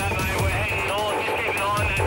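A thin, tinny voice over a two-way radio, over background music with a steady low bass.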